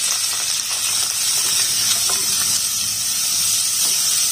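Chopped onions sizzling in hot oil in a nonstick pan: a steady frying hiss, with a few light clicks.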